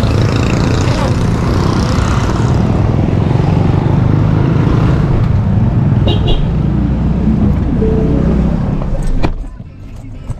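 Steady low rumble of street traffic outdoors, with three quick high beeps about six seconds in. About nine seconds in a car door shuts with a sharp thud and the outside noise drops to the quieter inside of the closed car.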